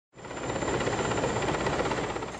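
Helicopter flying overhead: its rotor and engine noise comes in right at the start and runs steadily.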